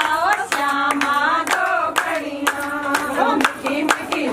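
Group of women singing a Himachali Pahari bhajan kirtan, with hand claps keeping the beat at about two a second.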